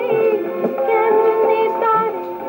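Old Bengali film song: a woman sings with instrumental accompaniment, her voice wavering in vibrato as it moves between held notes.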